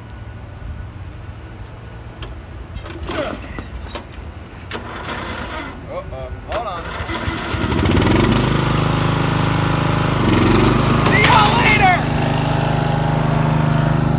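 Riding lawn mower engine running, a steady low hum that grows much louder about eight seconds in as the mower comes close. A man's voice calls out briefly a few times over it.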